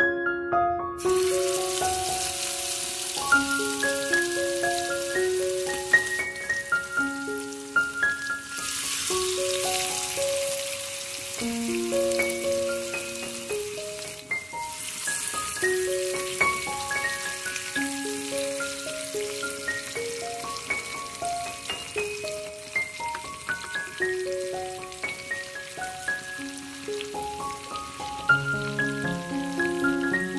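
Marinated fish pieces sizzling in hot corn oil in a frying pan. The sizzle starts about a second in, as the fish goes into the oil, and then runs on as a steady hiss. Gentle background music with keyboard notes plays over it.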